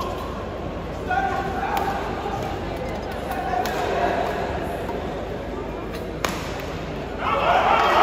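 Badminton doubles rally in a large hall: sharp clicks of rackets striking the shuttlecock over spectators' voices and shouts. About seven seconds in, the crowd breaks into loud cheering as the rally ends.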